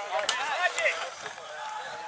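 Men's voices shouting and calling on an open rugby pitch, mostly in the first second, then a quieter stretch of outdoor background noise.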